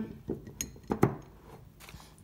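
Glass lid being set onto an empty glass candle jar, clinking glass on glass a few times, loudest about a second in.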